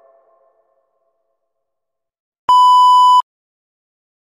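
The last of the music dies away, then after a pause comes a single steady electronic beep, loud and a little under a second long, cutting off abruptly.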